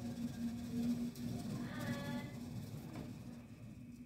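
Small mains-powered synchronous gear motor of an egg incubator's turner, humming steadily as it slowly turns the egg rack.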